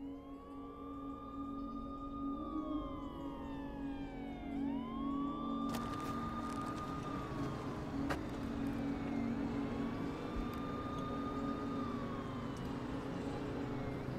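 A siren in the film's soundtrack wailing slowly, rising, holding and falling about every four to five seconds over a low steady drone. A hiss joins it about six seconds in.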